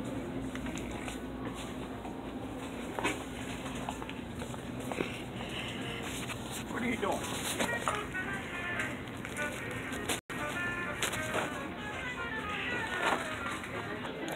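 Indoor background chatter of other people with music playing, mixed with knocks and rubbing from a handheld phone being moved around. The sound drops out briefly about ten seconds in.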